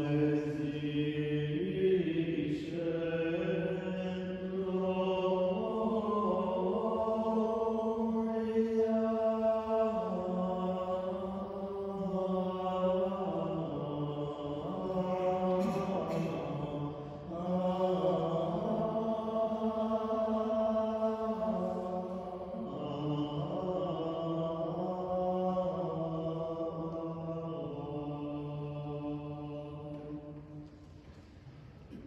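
Benedictine monks' chant of the psalm between the Mass readings: men's voices singing a single unaccompanied melodic line in long held notes, in phrases with short breaks between them, in a reverberant church.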